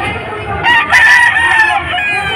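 A gamecock crows once: a single loud call lasting just over a second, starting about half a second in and falling in pitch as it ends.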